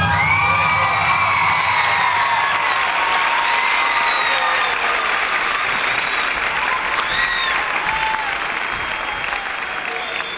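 Theatre audience applauding and cheering at the end of a dance number, with high-pitched cheers gliding up and down over the dense clapping. The end of the music's bass dies away in the first two seconds, and the applause slowly fades.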